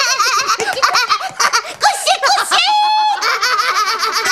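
Two women laughing together in quick bursts of high giggles, with a short held high-pitched squeal about three seconds in.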